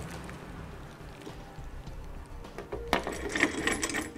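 Quiet handling of a bolt with its lock washer and flat washer at a steel nerf-bar bracket, then, about three seconds in, a sharp metal click and a run of quick small clicks as the bolt is threaded into the tube step. Plastic protective wrap rustles alongside.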